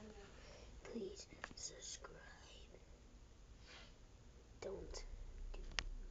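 Faint whispering and breathy sounds close to the microphone, with a few sharp clicks, about one and a half seconds in and again near the end.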